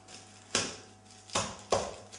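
Three sharp knocks on a hard kitchen surface, the first about half a second in and the other two close together near the end, over a faint low hum.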